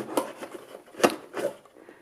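Handling noise from lifting a fur-covered parabolic microphone dish out of its cardboard box: several short rustles and soft knocks, the loudest about a second in.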